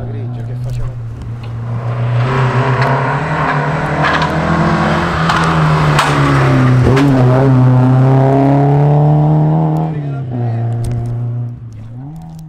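Alfa Romeo Giulia rally car's engine running hard as the car approaches, getting louder over the first few seconds. The pitch dips briefly about seven seconds in, and the sound falls away about ten seconds in.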